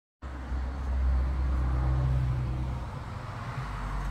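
A car driving by on the road: a low engine hum with tyre noise, strongest in the first few seconds and easing off near the end.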